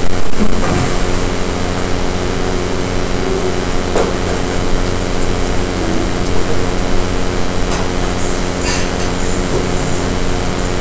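Steady low room hum under an even hiss, with a few faint knocks.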